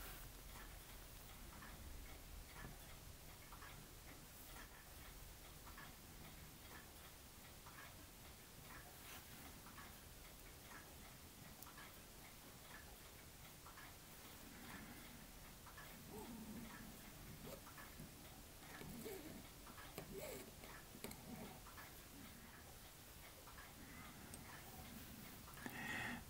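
Near silence with faint, regular ticking. In the second half come a few quiet handling sounds as a metal pointer works a glued brass photo-etch grille loose from the work surface.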